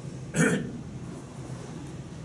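A person coughs once, short and sharp, about half a second in, over a steady low room hum.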